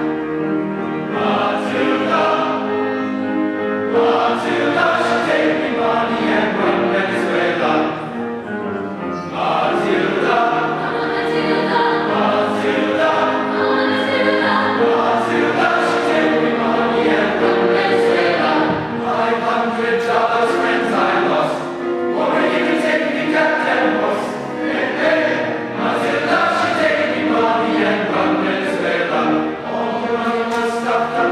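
Mixed choir of women's and men's voices singing a sustained choral piece under a conductor.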